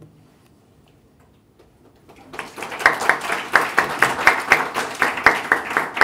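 Audience applauding, starting about two seconds in after a short lull.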